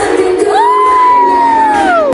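A single voice holds one long high note, rising into it about half a second in and sliding down at the end, over music and crowd noise.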